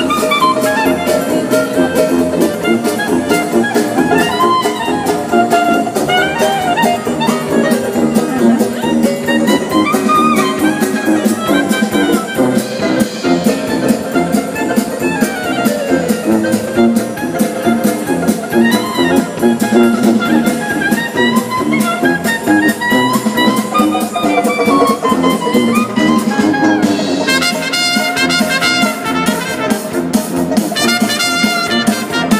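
Dixieland jazz band playing live: trumpet and clarinet leading over banjo, sousaphone and drum kit, with quick rising runs in the upper line.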